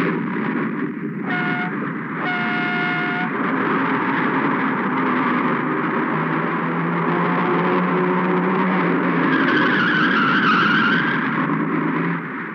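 Tata truck on a film soundtrack: a short horn blast and then a longer one, over a loud, dense rumble of noise. Later the engine's low tone comes up, and a wavering squeal follows near the end.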